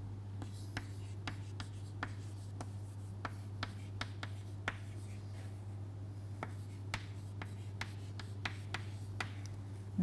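Chalk writing on a chalkboard: a run of short, irregular taps and scratches as words are written out, over a steady low hum.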